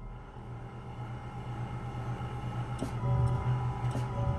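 Deagan chime keyboard console with its electric action running: a steady low hum that slowly grows louder. Two key-action clicks come about a second apart in the second half, and faint ringing chime tones enter about three seconds in.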